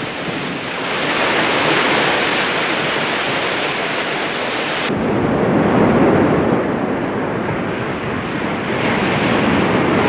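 Sea waves rushing and wind as a sailing ship cuts through choppy water. About five seconds in, this cuts abruptly to a different, lower steady rushing noise.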